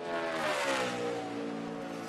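NASCAR Xfinity Series stock car's V8 engine at full throttle on a qualifying lap, passing close by with its pitch dropping as it goes past and then holding steady as it pulls away.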